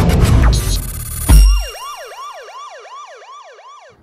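Sound design of a channel logo intro: a loud glitchy burst of crackling noise and a heavy hit, then a synthetic siren-like tone that swoops down and up about three to four times a second and fades out near the end.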